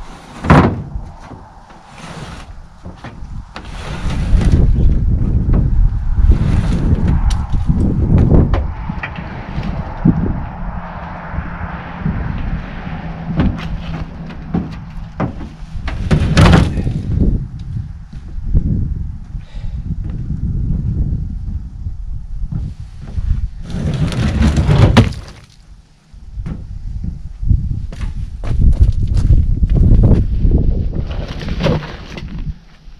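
A heavy maple log being levered and rolled off a pickup's tailgate onto wooden log skids: repeated loud wooden knocks and thuds with scraping and clatter between. The sharpest knocks come about half a second in and again around sixteen seconds in.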